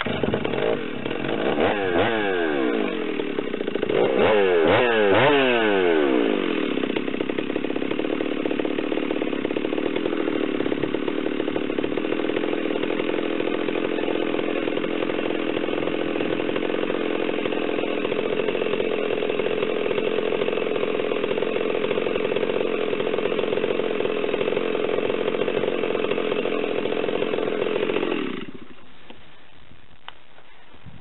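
A large Stihl chainsaw is revved up and down several times, then runs at a steady high speed through a cut in a large log for about twenty seconds. The engine note cuts off shortly before the end.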